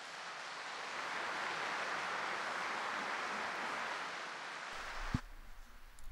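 A large crowd applauding. The clapping builds over the first second, holds steady, and dies away a little after five seconds, with a single low knock as it ends.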